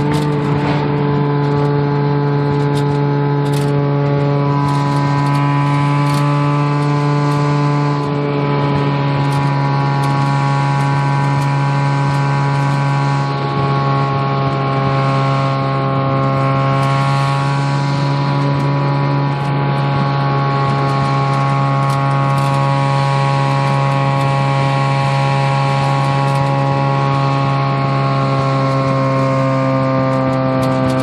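Mazda RX-7's two-rotor 13B rotary engine, breathing through headers and straight pipes, heard from inside the cabin while cruising at a steady 4,000 rpm or so. Its loud, even drone holds one pitch throughout, with only slight drifts.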